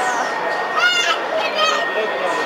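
Children's voices, with two high-pitched squeals: one about a second in and a shorter one just after halfway.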